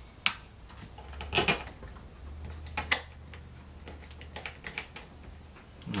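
Small steel nuts and bolts clicking and clinking as they are handled and threaded by hand, a few isolated clicks and then a quick run of them near the end.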